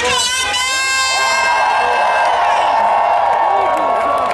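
Nightclub audience screaming and cheering. A single high-pitched shout falls in pitch in the first second, then many voices hold long, high screams.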